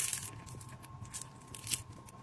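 A freshly cooked, very crispy waffle being broken apart by hand, crackling and crunching in a few short sharp bursts, the loudest near the end.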